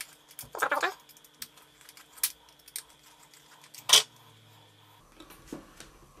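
Small screwdriver working a screw out of a plastic electric-shaver housing: scattered light clicks and scrapes of the metal tip on the screw and plastic, with the sharpest click near four seconds in.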